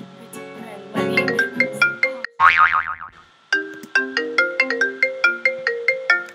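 A mobile phone ringtone playing a bright melody of quick, evenly paced plinking notes, with a rapid shimmering run about halfway through.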